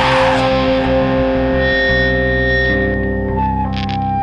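Rock song in an instrumental passage: distorted electric guitar chords ring out through effects as the full band drops back. A cymbal wash fades in the first half second, and the chord changes twice.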